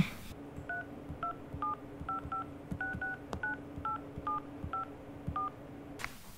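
Smartphone keypad dialing: about a dozen short touch-tone beeps, each two tones together, keyed at an uneven pace as a number is entered, over a faint steady hum.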